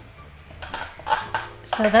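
Light clicks and rustles of small painting tools being handled on a table, a short run of them in the middle, followed near the end by a woman starting to speak.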